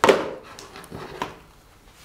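A sharp knock of an object set down on a desk, dying away quickly, then two light clicks about a second in as a Surface Go tablet is handled and lifted.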